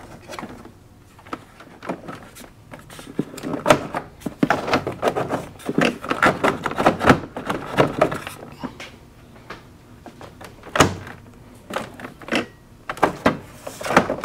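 Plastic dash trim panel of a Honda Gold Wing being pressed and worked back into place by hand: an irregular run of clicks, knocks and rattles, with a loud click a little over ten seconds in.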